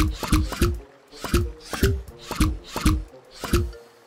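Cartoon sound effects of toy building blocks clicking into place: a quick run of about a dozen sharp clicks, each followed by a short low musical note.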